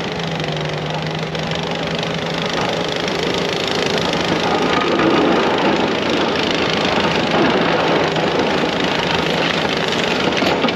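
ASV compact track loader's diesel engine running under load as it pushes a pile of hard-packed snow with a snow pusher plow, along with the scrape and hiss of the moving snow. The sound grows louder as the machine comes close, peaking about halfway through.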